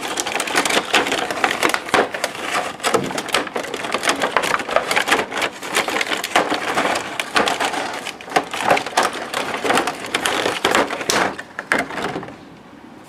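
Clear plastic blister packaging crinkling and crackling continuously as it is handled and pulled apart, with many sharp crackles.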